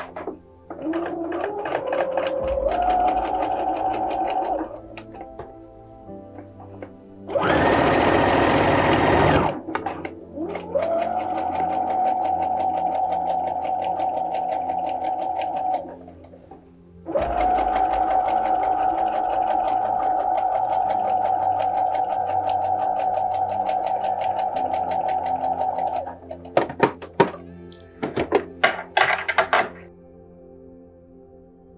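Brother NX-200 computerised sewing machine stitching in three runs: the motor whine rises in pitch as it speeds up and stops after a few seconds, then runs steadily for about five seconds and again for about nine. A loud two-second burst of noise comes between the first two runs, and a quick series of clicks follows near the end.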